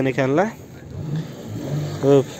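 A man's voice briefly, then a car engine running at a low level in the background.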